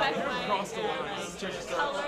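Several people talking over one another in a room: indistinct group conversation.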